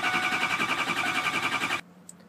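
Ford 6.0L Power Stroke V8 diesel being cranked by its starter: a fast, even rhythm of compression pulses, about a dozen a second, over a steady starter whine. The cranking stops abruptly near the end without the engine firing. It is a no-start that the owner puts down to a failing FICM (fuel injector control module).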